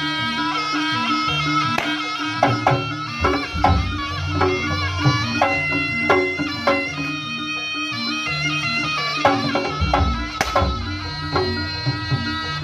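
Live jaranan gamelan music played through loudspeakers: a reedy slompret melody over kendang drums, a repeating gong-chime pattern and deep gongs. A single sharp crack stands out about ten seconds in.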